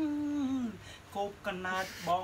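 A man singing a Khmer chapei song: one long held note that slides down just before a second in, then a run of shorter sung syllables.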